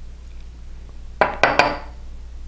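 A few quick clinks on a ceramic mug, bunched together a little past a second in, as milk is poured from a small cup into cake batter.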